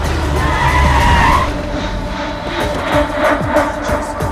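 A vehicle arriving with a heavy engine rumble and a short tyre skid about a second in, under dramatic background music that continues with sharp percussion hits.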